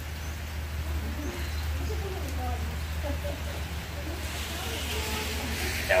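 Faint, distant voices over a steady low rumble, with a hiss building over the last couple of seconds.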